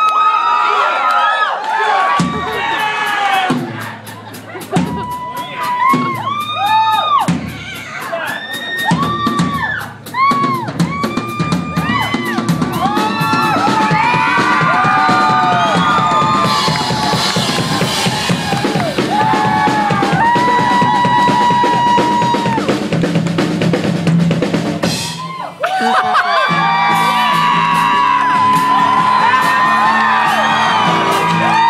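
Live rock drum kit solo. Spaced bass-drum and snare hits under whooping from the crowd build into a long, fast snare roll with a cymbal wash in the middle. After a short break near the end, the band comes in.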